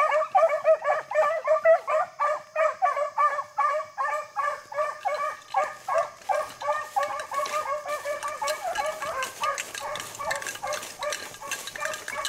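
Beagles baying on a rabbit trail, a fast run of short, overlapping calls from more than one hound. The calls grow fainter after about halfway as the hounds draw away. Rustling of brush joins from about six seconds in.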